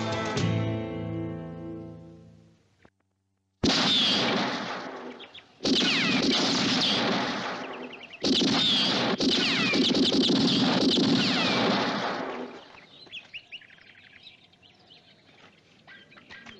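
Orchestral-rock theme music fading out, then four revolver shots a second or two apart, each ringing away with a whine like a ricochet. Faint bird chirps follow near the end.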